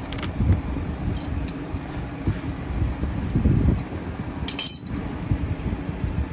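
Light clicks and clinks of plastic and metal as a Briggs & Stratton all-plastic carburetor and its throttle linkages are worked off a lawn mower engine by hand, with one sharper clink about four and a half seconds in, over a steady low background rumble.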